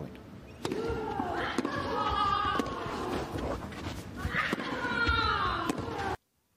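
Tennis rally on an indoor clay court: racket strikes on the ball about once a second, with the players' loud grunts drawn out on each shot.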